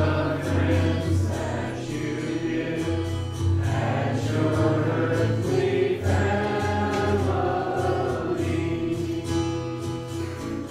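A church congregation singing a hymn together, with long held notes.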